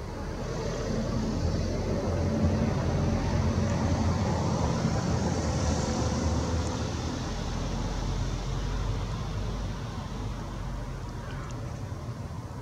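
Low rumble of a passing vehicle, swelling about a second in and fading away toward the end.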